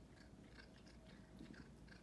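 Faint crunching of a cat chewing a shrimp: a string of soft, quick crunches.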